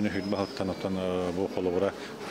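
Only speech: a man talking, with a steady low hum beneath.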